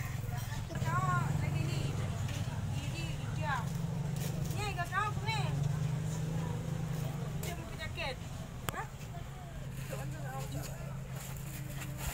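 Children's voices talking and calling out over a steady low hum, with a single sharp click about nine seconds in.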